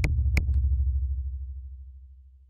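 A low synthesized drum sound from the DrumComputer plugin's wavetable oscillator. It is struck with sharp clicks at the start and again about a third of a second in, then rings on and fades away over about two seconds.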